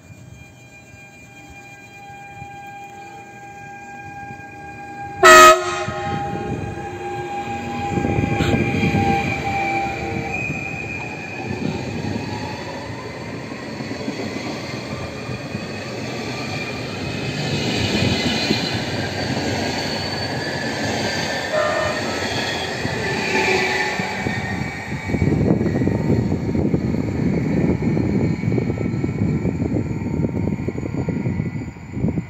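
PKP Intercity Stadler FLIRT electric multiple unit pulling away, its electric drive whining and rising in pitch as it speeds up. About five seconds in the driver gives one short, very loud horn blast, the Rp1 attention signal. The train then rumbles past on the rails.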